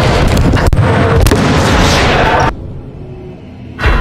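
Busy gym noise with basketballs bouncing and a sharp knock about two-thirds of a second in, cut off abruptly about two and a half seconds in. Near the end comes a heavy boom sound effect with a slowly fading tail, a video-game style 'mission failed' sting.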